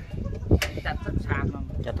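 A man's voice talking, with two short sharp knocks, one about half a second in and one near the end.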